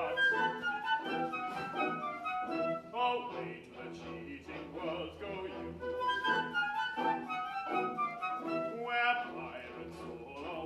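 Live orchestra playing the accompaniment of a comic-opera song, a continuous melodic passage.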